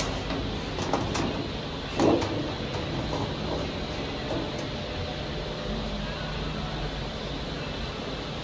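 Steady low rumbling background noise with a few light clicks and a louder knock about two seconds in.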